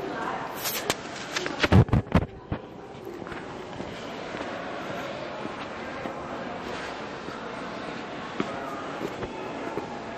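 Indistinct voices of people talking some way off over a steady outdoor background. In the first two seconds or so comes a cluster of loud knocks and thumps.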